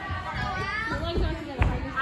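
Several young girls' voices talking and calling out in a large, echoing gym, with a dull thud about one and a half seconds in.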